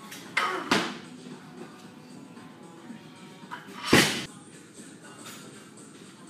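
Loaded barbell with plates coming down onto a lifting platform between cleans: a heavy thud with a quick second knock about half a second in, and another thud near four seconds, over steady background music.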